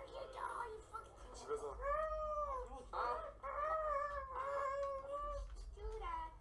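A young man's voice making high-pitched vocal sound effects: a string of drawn-out squeals that rise and fall in pitch, starting about two seconds in, four or so in a row.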